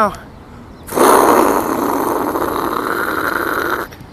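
A loud, steady machine noise starts suddenly about a second in and cuts off sharply about three seconds later.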